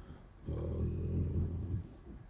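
A man's low, drawn-out hesitation sound, one long "uhh" of about a second and a half: a filled pause between words.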